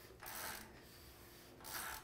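A hand ratchet wrench clicking faintly in a few short strokes as it turns the engine's crankshaft by its front bolt.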